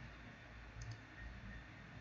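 A faint computer mouse click a little under a second in, over low steady background hiss.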